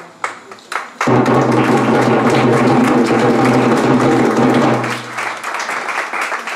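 A short fanfare: trumpet and accompaniment hold one loud sustained chord for about four seconds, starting about a second in and stopping near the five-second mark. Crowd clapping runs through it and carries on after the chord ends.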